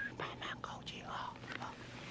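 A man whispering close to the microphone.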